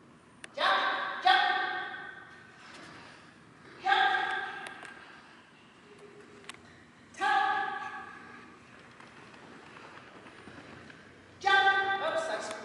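A woman's short shouted cues to a dog, five single high calls at steady pitch, each ringing on for about a second in a large hall.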